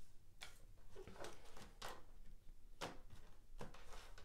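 Tarot cards being drawn from the deck and laid down on a wooden table: about five faint, soft slaps and slides of card on card and wood.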